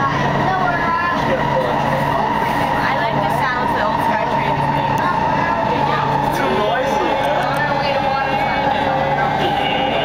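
Canada Line metro train running at speed through a concrete tunnel: a steady rumble of wheels on rail with a steady whine over it and a low hum that pulses about once a second. Passengers' voices are heard in the car.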